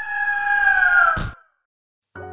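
A single drawn-out bird cry, used as a logo sound effect: held steady, then falling in pitch near the end. It closes with a short burst of noise about a second in.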